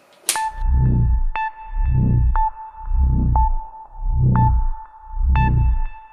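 A sharp toggle-switch click, then the Apocalypse Generator's Arduino-driven sound effects playing through its small built-in speakers: a steady high tone with a sharp tick every second and a low throbbing swell about once a second, a countdown effect started by the switch.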